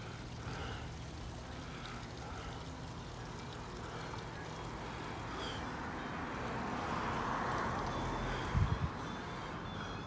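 Street traffic: a passing car's engine and tyre noise swells to a peak about seven to eight seconds in and then eases off, over a steady low hum. A couple of soft thumps come just after the peak.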